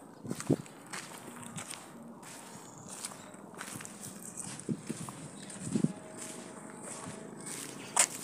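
Footsteps of a person walking, with a few irregular, short thumps over a steady hiss.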